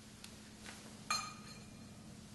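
A single sharp, ringing clink about a second in, like a hard object knocked against a dish, with a faint tap shortly before it.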